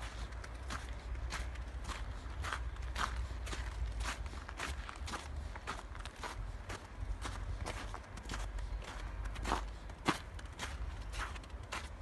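Footsteps crunching through fresh snow at a steady walking pace, about three crunches a second, two sharper ones near the end, over a steady low rumble on the microphone.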